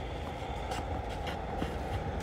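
Steady low rumble of outdoor background noise, with a couple of faint clicks.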